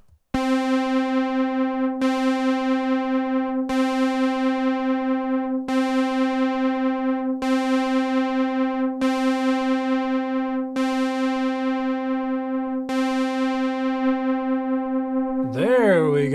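A synthesizer note, the same pitch re-struck about every two seconds, playing through a June-60 chorus pedal on its second chorus setting. Its left internal trim pot, which sets the speed of that chorus, is being turned. Near the end a wavering, pitch-bending sound comes in.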